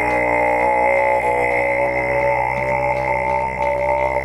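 A held, droning chant-like chord: many steady tones sounding together at an even, unchanging level, with no break or change in pitch.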